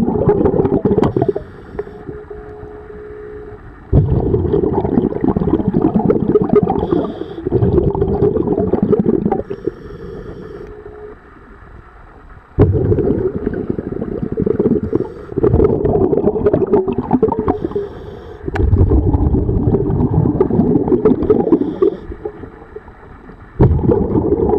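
Scuba diver breathing through a regulator underwater: loud rushes of exhaled bubbles lasting a few seconds alternate with quieter inhalations carrying a faint high hiss, about four breaths in all.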